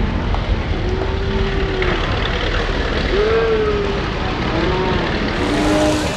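A rock bouncer buggy rolling over and tumbling down a rocky hill, its engine running loudly the whole time, with spectators letting out several long rising-and-falling shouts.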